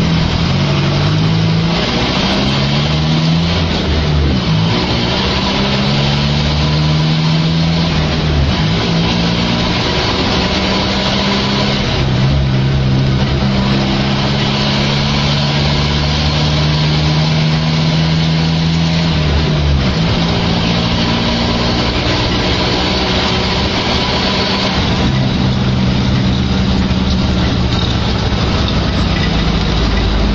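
Mercedes-Benz OF1418 bus's OM 904 LA inline four-cylinder diesel with an open exhaust, heard from on board while driving through a manual gearbox. Engine pitch climbs and drops with gear changes in the first few seconds, holds steady for a long stretch in the middle, then falls about two-thirds of the way through.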